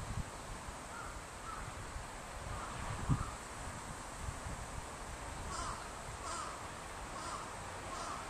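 Short bird calls repeated several times, over a steady background hiss, with a single low thump about three seconds in.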